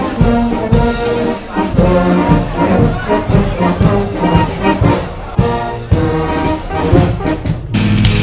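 Brass band playing live, with horns and trombones holding and changing notes. Near the end the band's sound is cut off abruptly by louder rock music.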